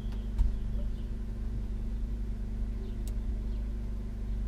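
A steady low mechanical hum, with two faint clicks, one about half a second in and one about three seconds in.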